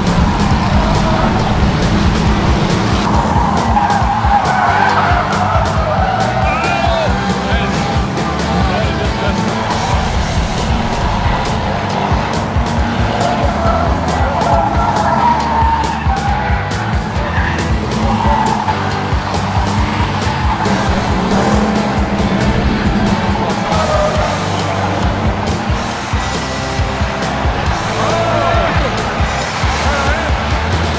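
Ford Crown Victoria race cars running hard on a wet track: V8 engines under load and tires squealing as they slide through the corners. Music plays over it.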